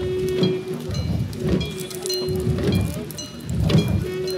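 Garo long drums (dama) beaten in a fast, dense rhythm by a line of drummers, with metal gongs ringing over them and a steady held note that comes and goes.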